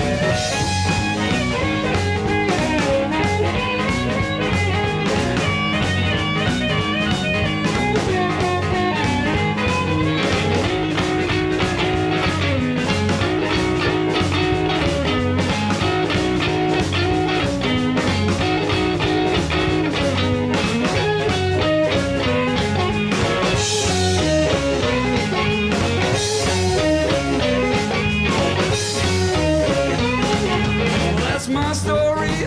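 Blues band playing an instrumental break: a harmonica solo over electric guitar, bass guitar and a drum kit keeping a steady beat.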